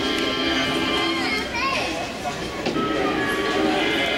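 Music from a vintage sci-fi movie trailer playing through the theater's sound system, with held notes and a wavering, gliding tone about a second in, over voices in a large hall.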